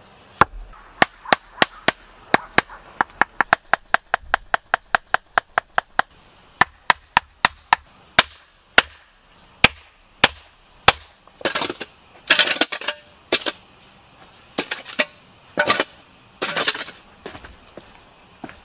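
Sharp knocks as stones are tapped into place between the wooden log rounds of a paved path, about two to three a second, slowing and stopping about eleven seconds in. Then a handful of short scraping, rustling bursts.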